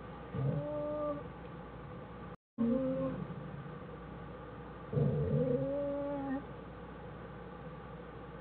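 Black bear cub crying in the den: three drawn-out, cat-like calls, each holding a steady pitch, the last and longest about a second and a half. A steady hiss runs beneath.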